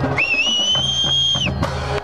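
A single shrill whistle, held for about a second, rising slightly at the start and dropping away at the end, over a marching drumline's drumming.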